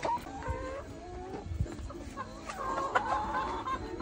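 A flock of brown laying hens clucking and calling over one another as they feed at a trough, with a few sharp taps among the calls.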